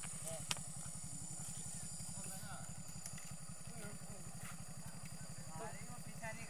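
Motorcycle engine idling close by, a steady low, rapid putter.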